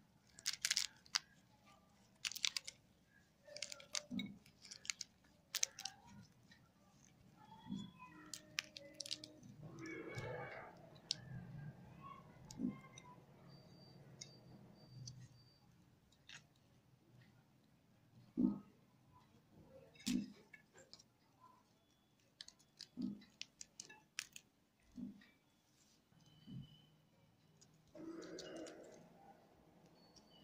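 Pomegranate rind cracking and tearing as gloved hands pull the scored fruit apart. Scattered crisp crackles and snaps come as the segments split open and the arils loosen, with a few louder snaps in the second half.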